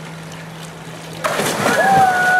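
A polar bear plunging into its pool: a sudden loud splash about a second and a quarter in, followed by a person's long held cry.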